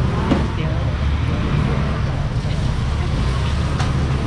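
Busy market ambience: background voices of a crowd over a steady low rumble, with a couple of light knocks about a third of a second in and near the end.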